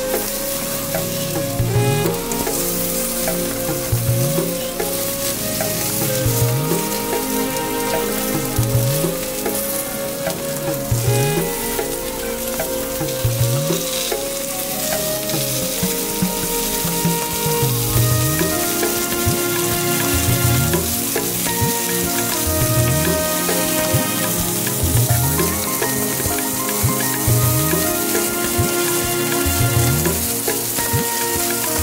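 Background music with a steady beat, a low pulse about every two seconds, over the continuous sizzle of meat skewers grilling over charcoal.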